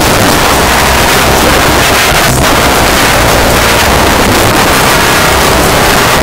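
Loud, steady rushing noise with no clear tones, and a brief crackle about two and a half seconds in.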